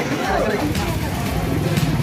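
People talking, over a steady low background rumble.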